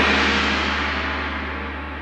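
A single crash that rings and slowly fades over about two seconds above a low held bass tone, part of a recorded hip-hop album track.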